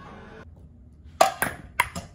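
A ping-pong ball bouncing on a hard surface: four sharp, hollow clicks in the second half, the first the loudest.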